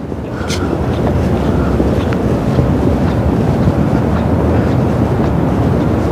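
Wind rumbling steadily on the microphone, building over the first second and then holding, with no engine tone in it.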